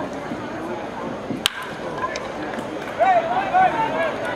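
A bat cracking once against a pitched baseball, sharp and sudden about a second and a half in, over steady crowd chatter that grows louder with shouting voices near the end.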